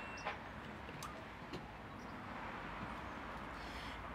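Quiet steady outdoor background noise with a low rumble and a few faint soft clicks in the first second and a half, as of an EV rapid charger's connector and controls being handled.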